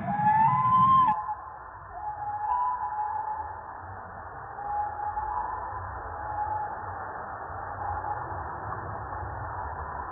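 Music that cuts off about a second in, giving way to the eagle cam's live outdoor microphone sound. That sound is a steady hiss and low rumble with faint, intermittent held tones.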